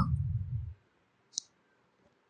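A single computer mouse click, sharp and brief, about one and a half seconds in.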